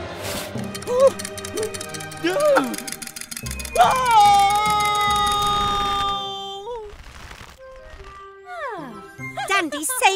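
Cartoon soundtrack: light background music with characters' wordless vocal exclamations, including one long held cry in the middle. Under that cry runs a fast, even rattle of clicks.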